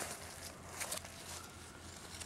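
Faint light rustles and a few soft clicks over a low steady hum.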